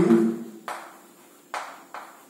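Chalk tapping and scraping on a blackboard as words are written: three sharp strokes a fraction of a second apart, each dying away quickly.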